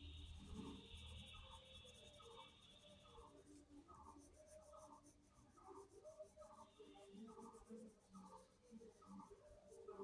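Faint scratching of a pencil on paper as short strokes are drawn, about two strokes a second.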